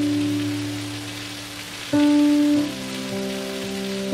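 Fountain jets splashing into their basin, a steady hiss of falling water, over background music with held notes.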